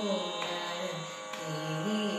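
A girl singing a Carnatic krithi in raga Dheera Shankarabharanam, holding long notes that bend and glide between pitches.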